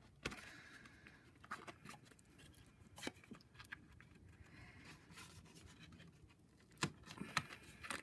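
Quiet handling of cardstock and a small metal ring drawer pull as its prongs are pushed through a hole in the card drawer front: soft rustling and scraping with a few sharp clicks, the loudest near the end.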